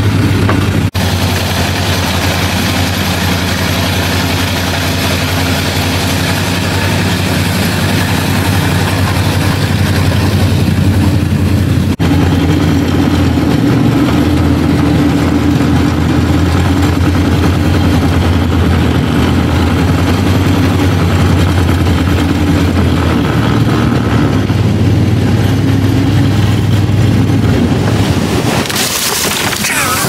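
Flat-bottom boat's motor running steadily at speed over choppy water, with the rush of wind and water over it; near the end the motor eases off as the boat slows.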